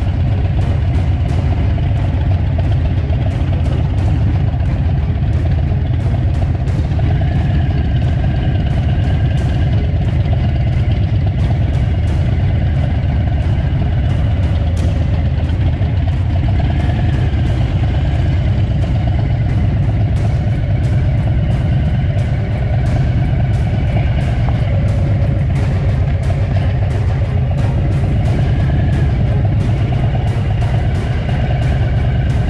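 Motorcycle engine idling and running at low speed, a steady low engine note with rapid, even firing pulses.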